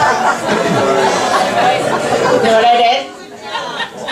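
Comedy club audience laughing and chattering, many voices overlapping, dying down about three seconds in.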